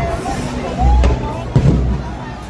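Aerial fireworks bursting overhead: a few deep booms, the loudest about a second in and again about half a second later, over crowd voices.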